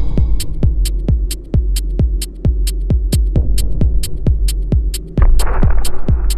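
Minimal techno track: a steady four-on-the-floor kick drum at about two beats a second over a low bass drone, with a short high tick between the kicks. About five seconds in, a noisy swell comes in and the music gets louder.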